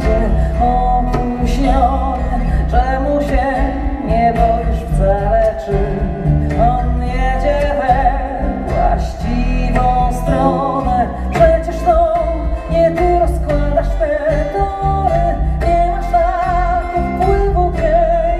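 Live acoustic music: a woman singing with vibrato, accompanied by a hand drum struck with the hands in a steady rhythm and other acoustic instruments.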